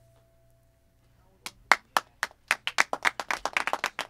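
After a moment of near silence, a few people clap, starting about a second and a half in. The claps are scattered at first and come quicker and closer together toward the end.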